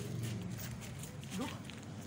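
Footsteps crunching on gritty, rubble-strewn ground, a step every few tenths of a second, over a steady low hum. A short rising-and-falling cry comes near the end.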